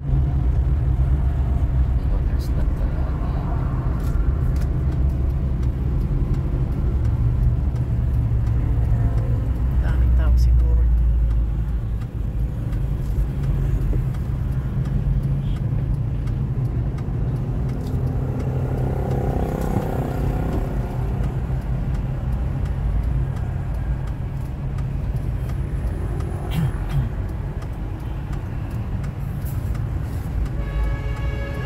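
Vehicle engine and road rumble heard from inside the cabin while driving, a steady low drone. It is loudest early on and eases off about twelve seconds in as the vehicle slows in traffic.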